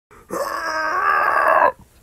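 A man's voice giving one long, strained shout that holds steady for about a second and a half, then cuts off sharply.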